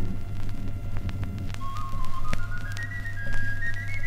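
Vinyl record surface noise between tracks, with scattered crackles and a steady low hum. About one and a half seconds in, a flabiol, the small Catalan pipe of a cobla, starts a thin melody that climbs step by step: the introit that opens a sardana.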